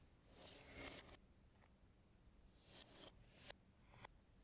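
Faint crinkling of the thin plastic bags holding the Lego pieces as they are handled, in two short bursts about two seconds apart.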